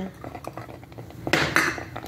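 Kitchen utensil and dishware sounds: small clinks against a cooking pot, with one short, louder scraping clatter about a second and a half in.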